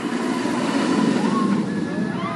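Steel hyper coaster train (a B&M) running along the track: a broad rushing rumble that swells about a second in. A short rider's voice rises over it about a second and a half in.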